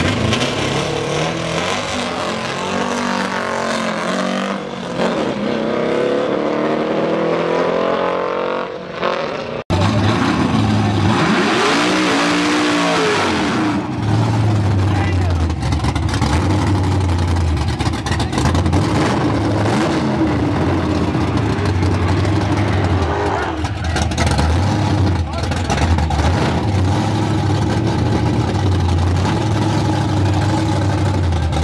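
Drag-race cars: an engine revving up with rising pitch as a car accelerates, then after a cut an engine rising and falling in pitch as a car runs by. Then a race car engine idles with a steady, pulsing low rumble.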